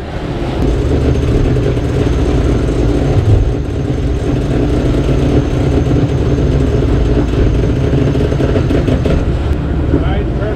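Steady rush of wind on the microphone and sea water running along the hulls of a sailing catamaran under way in choppy open water, heavy in low rumble.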